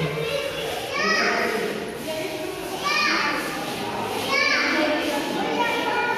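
Children's high-pitched voices calling out and chattering in a large indoor hall, with rising shouts about one, three and four and a half seconds in, over general visitor chatter.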